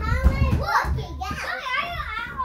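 A child's voice, calling out and chattering excitedly in a small room, with low thuds in the first half second.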